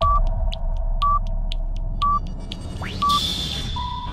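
Electronic newscast closing theme: a steady low drone with a short high beep once a second, four in all, and faint ticks between them. A rising sweep comes about three seconds in, and a lower tone near the end leads into the full theme music.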